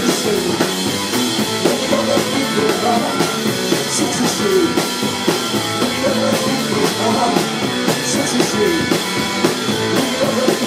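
Live mod punk rock power trio playing loud and steady: drum kit driving a regular beat under electric guitar and bass, heard from within the crowd in a small club.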